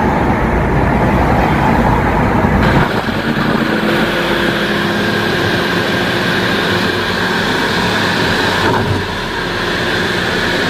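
Steady road and engine noise heard inside a moving car's cabin at highway speed. About three seconds in, the sound shifts suddenly, with less low rumble and more hiss.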